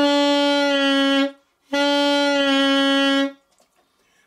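Saxophone playing two long held notes, each about a second and a half, with a short breath between them. This is an embouchure-relaxing exercise for lowering the pitch of a note, here done without a finger pushing under the chin.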